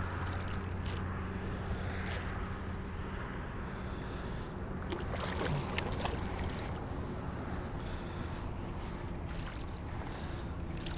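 Shallow water sloshing and trickling around a wading angler's legs and a landing net as a small flounder is scooped up, with small scattered clicks. A steady low hum runs underneath and fades out after about six seconds.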